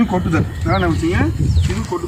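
A man's voice speaking outdoors. A bird calls in short falling whistles about once a second behind it.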